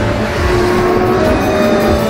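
Show theme music with a car engine sound effect mixed in under it.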